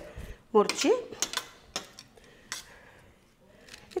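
A short spoken syllable, then a few scattered light clicks and taps of kitchen utensils being handled, tailing off to faint room tone near the end.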